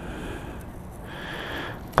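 Soft rustle of a vinyl sticker and its backing paper being handled and pressed onto a motorcycle's plastic tail fairing, over a low steady outdoor rumble.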